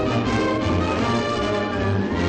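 A studio orchestra plays the closing music of a 1950s cartoon score, full and steady, with held chords.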